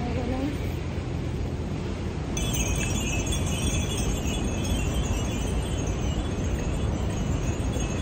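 A shrill, dense buzzing chorus of cicadas in the street trees sets in suddenly about two and a half seconds in. It sounds over a steady low city rumble of traffic and wind.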